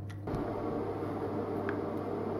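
A steady low hum, joined about a third of a second in by a louder, even, machine-like noise that holds. One short tap of a knife on a plastic chopping board comes near the end.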